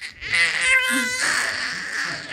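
A six-month-old baby squealing and laughing in a high voice, breaking into quick pulses of laughter about a second in.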